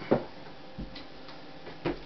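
A few light clicks and knocks from handling objects, with a sharper click just after the start and another near the end, over faint room hum.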